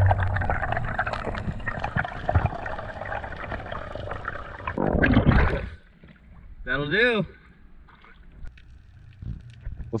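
Water rushing and crackling with small clicks on an underwater action camera during a freediver's ascent, swelling to a loud burst about five seconds in. Near the middle, after it drops away, comes a brief wavering vocal sound.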